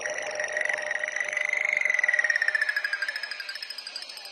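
Melodic techno breakdown with the kick and bass dropped out: a high, rapidly pulsing synthesizer tone bends up in pitch to a peak about halfway through, then slides back down.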